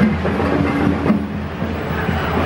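Steady low rumble of a moving parade float's vehicle, heard over the general din of the street parade.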